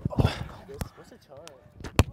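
A volleyball struck by hands during a rally: sharp slaps of hand on ball about a second apart, the loudest near the end, with players calling out in between.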